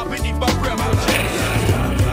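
Hip-hop backing track with a steady beat, over longboard wheels rolling on asphalt. About a second in, a hissy scraping rasp sets in as the board is slid out with a hand down on the road.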